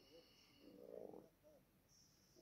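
Near silence: faint room tone with a faint, distant voice and a faint steady high whine that fades out about halfway through.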